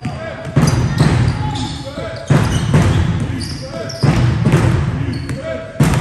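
A basketball bouncing on a sports-hall floor, four heavy thuds that ring on in the large hall, with short sneaker squeaks from players moving on the court.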